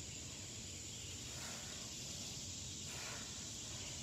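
Faint, steady outdoor background noise: an even hiss with a low hum beneath it and no distinct events.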